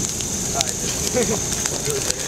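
A burning couch in a large bonfire crackling, with scattered sharp pops over a steady hiss. Faint voices talk in the background.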